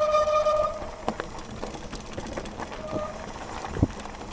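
Chromag Stylus mountain bike rolling fast down a dirt singletrack. A steady high-pitched whine from the bike runs through the first second and returns briefly about three seconds in, over tyre noise and scattered knocks from trail bumps, the sharpest a thump just before the end.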